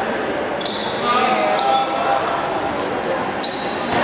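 Live game sound in a large indoor basketball hall: crowd and player voices carry through the hall, broken by several short high sneaker squeaks on the court floor, about half a second in, at two seconds and near the end.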